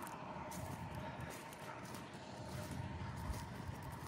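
Faint footsteps of someone walking across a wet, muddy crop field, with quiet open-air background.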